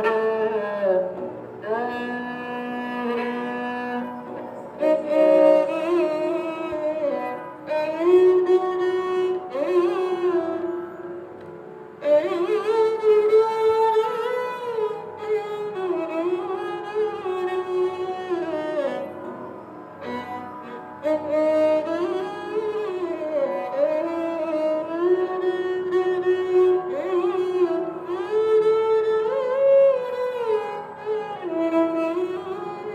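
Sarangi bowed solo, playing the slow melody of an old film song with many sliding notes. New phrases begin with a sharp attack about 12 and 20 seconds in.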